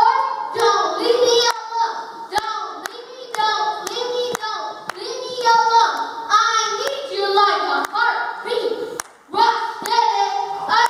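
A boy rapping into a handheld microphone in a rhythmic, half-sung chant, with sharp handclaps keeping a steady beat under the vocal.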